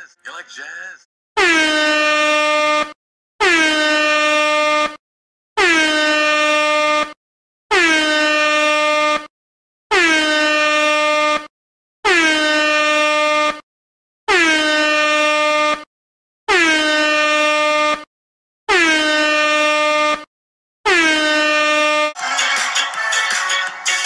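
Air horn sound effect blasting ten times in a steady series, each blast about a second and a half long with a short gap between, each dipping slightly in pitch at its start and then holding one steady note.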